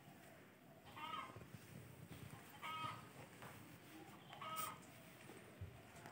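Faint bird calls: three short, alike calls repeated evenly about two seconds apart.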